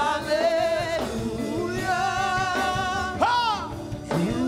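Gospel singing from a church praise team: a lead voice holds long, wavering notes, with a sharp upward swoop about three seconds in.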